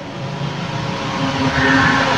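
Steady rushing background noise with a low rumble, growing slightly louder, in a pause between spoken sentences.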